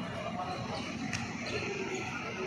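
A basketball bouncing on a hard outdoor court, one sharp bounce about a second in and a fainter one just after, over faint voices of players and onlookers.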